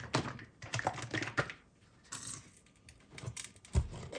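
Quick, irregular light clicks and taps of small hard objects, pausing for about a second midway, with a louder knock near the end.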